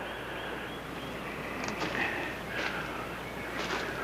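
Quiet outdoor ambience: a steady hiss with faint high chirps and a few short soft rustles.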